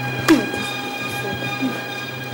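A steady, unchanging drone from a film's background score, with one sharp hit and a short falling sound about a third of a second in.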